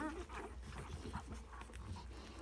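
Newborn bullmastiff puppies squeaking as they nurse: several short, high squeaks, the clearest right at the start.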